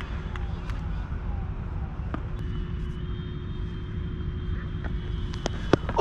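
Steady low rumble of wind buffeting a helmet-mounted camera's microphone, with a few faint clicks.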